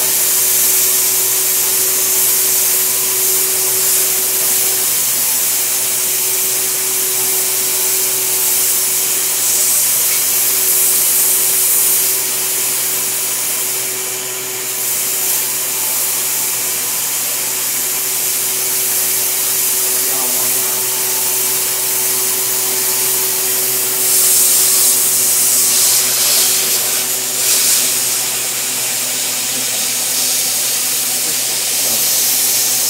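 High-speed milling spindle running steadily with a steady whine over a loud hiss, its cutter routing through the composite skin of a glider fuselage. It gets louder for a few seconds near the end.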